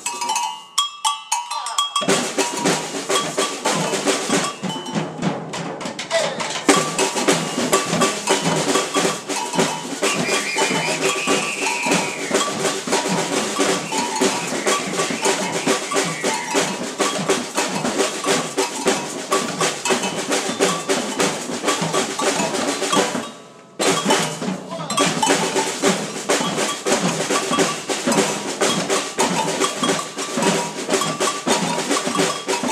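Ensemble of snare drums and field drums played with sticks in a fast, dense rhythm, the strokes crowding together steadily; the playing breaks off for about a second partway through and then resumes.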